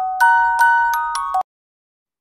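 Short intro jingle of bell-like struck notes, glockenspiel-like, about four ringing, decaying tones in a simple melody that cuts off suddenly about one and a half seconds in.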